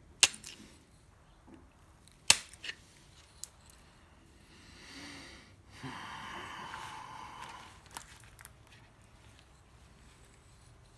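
Obsidian being pressure-flaked with a hand-held flaker: two sharp snaps as flakes come off, one right at the start and one about two seconds in, followed by a few lighter clicks. Around the middle comes a couple of seconds of scraping rasp, and near the end two more small clicks.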